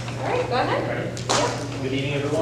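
A man talking in a large, echoing hall over a steady low hum, with one sharp noise about a second and a half in.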